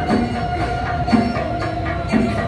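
Temple procession music: one long held note sounding throughout, with a low drum stroke about once a second and quick clattering percussion.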